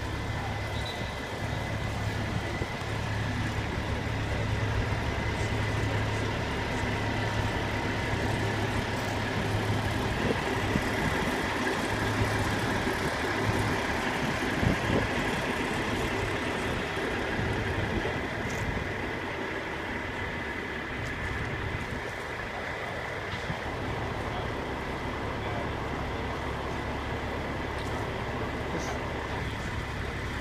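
Heavy tow trucks' diesel engines idling steadily: a low, even hum with a thin steady tone above it.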